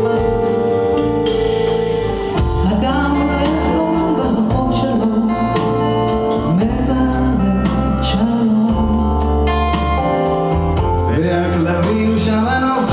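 A live rock band of keyboards, drums, electric guitar and bass guitar playing a song, with a man and a woman singing the lead vocals as a duet.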